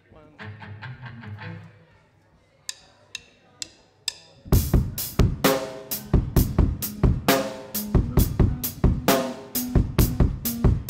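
A few quiet low notes from the stage, then four evenly spaced sharp clicks, a drummer's count-in. About four and a half seconds in, a live rock band comes in loud, with a steady beat of bass drum and snare hits on the drum kit.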